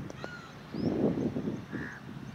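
Crows cawing, with harsh calls clustered about a second in, and smaller birds chirping thinly above them.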